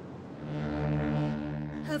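A ship's horn sounding one deep, steady blast, starting about half a second in.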